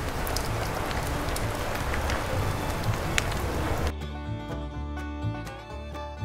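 Chicken thighs on a spit sizzling over charcoal embers, with scattered crackles, over background music. The sizzling cuts off abruptly about four seconds in, leaving only the music.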